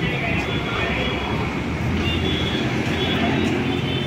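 Steady street noise: a constant rumble of road traffic with voices in the background.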